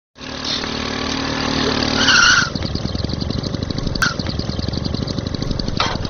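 Motorcycle engine running, first with a steady tone, then from about two and a half seconds in a fast, even putter. A brief, louder, higher-pitched sound comes about two seconds in, and a sharp click near four seconds.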